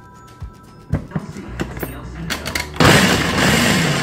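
Countertop blender chopping raw cauliflower florets into cauliflower rice. A few knocks come as the florets and lid go in, then the motor starts loud about three seconds in.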